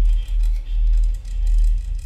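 Contemporary chamber-ensemble music dominated by a deep, low rumble that swells and dips every half second or so, with faint sustained high tones above it.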